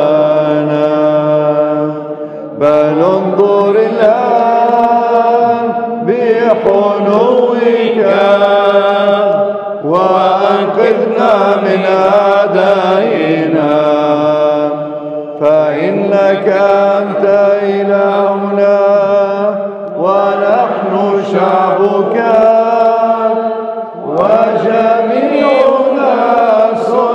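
Byzantine liturgical chant sung in Arabic by a solo male voice: long melismatic phrases of held and gliding notes, each a few seconds long, with brief breaths between them.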